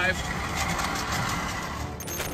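Metal grinding on asphalt from an SUV running at freeway speed on a bare front wheel, its tire gone and the hub and brake disc dragging on the road: a steady, harsh scraping hiss.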